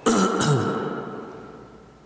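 A man clearing his throat once, right at the start, the sound dying away over about a second.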